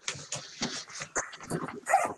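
A dog making a quick run of short, broken sounds, about a dozen in two seconds, coming over a video-conference audio line.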